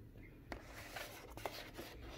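Cardboard product box scraping and rustling against a wooden tabletop as it is handled and lifted, with a few sharp clicks, starting about half a second in.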